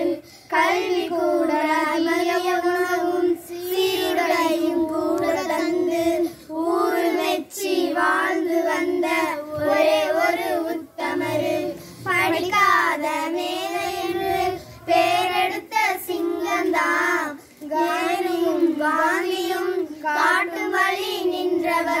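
A small group of schoolchildren singing a Tamil song together in unison, unaccompanied, in phrases of a few seconds with short breaths between them.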